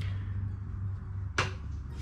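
Steady low background hum, with a single sharp click or knock about one and a half seconds in.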